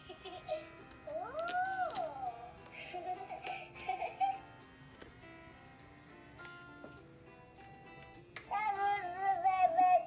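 Baby Alive Baby Grows Up doll's electronic sounds during her grow-up transformation: a twinkly chime tune, with recorded baby coos and giggles about a second in and again near the end.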